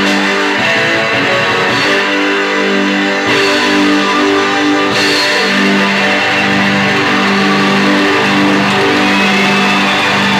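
Live rock band playing an instrumental passage, electric guitar to the fore over drums and bass, with long held notes; the low end fills out about three seconds in. Recorded on VHS tape.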